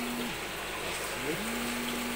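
Steady trickle of running water in an aquaponics tank system, under two long hummed "mm" sounds from a person, the second rising into its pitch.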